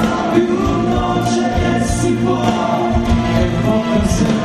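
Live pop-rock band playing: drums keeping a steady beat under electric guitars and keyboard, with singing over the top.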